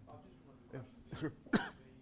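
A person coughs once, sharply, about one and a half seconds in, after a few quiet spoken words, over a faint steady room hum.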